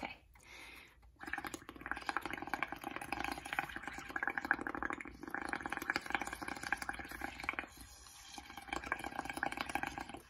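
Blowing through a drinking straw into a bowl of dish soap, water and paint: a rapid bubbling gurgle that starts about a second in and eases off near the end as the mound of bubbles builds.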